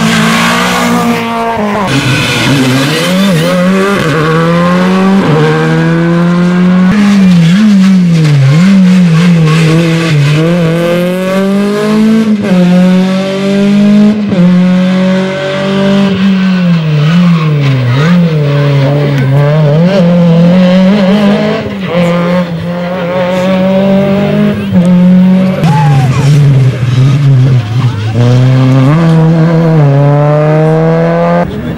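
Rally car engines revving hard through the gears as the cars pass at speed, the pitch climbing with each gear and dropping at every shift, over and over.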